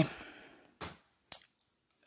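Two short clicks about half a second apart, the second sharper, in a quiet room.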